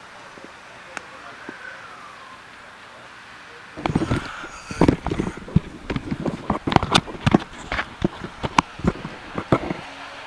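Handling noise on a phone's microphone: about four seconds in, a loud, irregular run of knocks, clicks and rubbing begins as the phone is picked up and moved about, lasting until just before the end.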